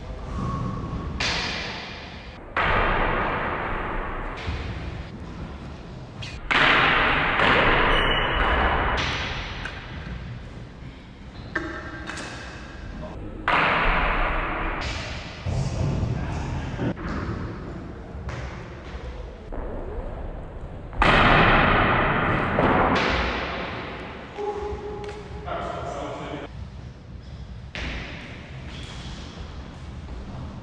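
Longsword sparring: a string of sudden thuds and blade clashes, some with a short metallic ring, echoing in a hard-walled court. The loudest impacts come about six and a half seconds in and again about twenty-one seconds in.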